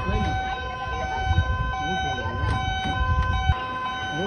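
Two-tone emergency-vehicle siren alternating between a high and a low note about every half second, with a person's wavering cries over it. A low rumble runs underneath and cuts off suddenly near the end.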